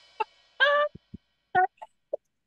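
A few short, high-pitched excited squeals and exclamations of delight, the longest rising in pitch, with two soft low thumps in between.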